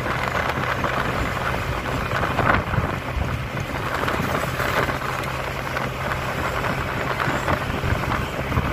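Motorcycle engine running steadily at cruising speed, with wind rushing over the microphone.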